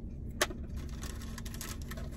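Light clicks and rustles of a sandwich being handled and eaten from a takeout clamshell box, with one sharper click about half a second in, over a steady low hum.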